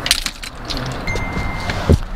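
Clinks and rustling of a metal tripod and gear being handled inside a car, with a steady high beep about a second in and a heavy thump near the end.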